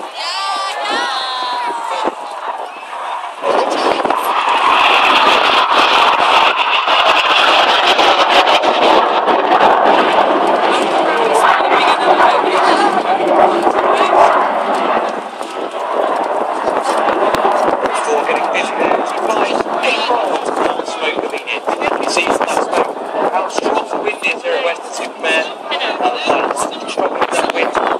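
Red Arrows BAE Hawk T1 jets passing overhead, the rush of their turbofan engines coming in loud about three to four seconds in, with a high whine in it for several seconds, easing slightly about halfway and carrying on. Gusty wind is buffeting the microphone throughout.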